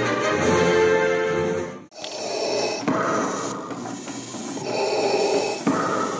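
Orchestral film music with brass cuts off about two seconds in. Darth Vader's mechanical respirator breathing follows: slow, rhythmic hissing breaths in and out.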